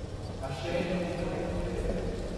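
A man's voice speaking, beginning about half a second in.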